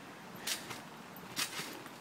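A trampoline being bounced on: two short, noisy sounds from the mat and springs as a child lands, about a second apart.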